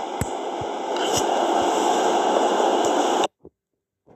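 Steady static hiss, as of a noisy audio feed, with a few faint clicks; it cuts off suddenly a little over three seconds in.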